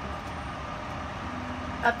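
Steady low rumble of outdoor city background noise during a pause in speech, with a woman's voice starting again right at the end.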